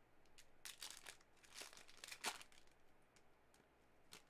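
Faint crinkling and tearing of a foil trading-card pack wrapper being torn open by hand: a few short rustles in the first two and a half seconds, then near silence.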